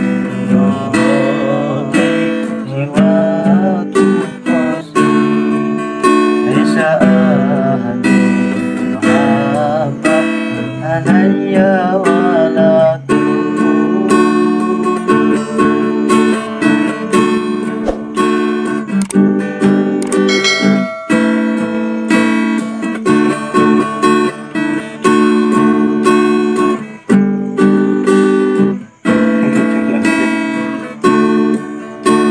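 Sholawat, an Islamic devotional song, sung by a woman in wavering, ornamented lines over acoustic guitar accompaniment. From about halfway the melody turns to steadier held notes.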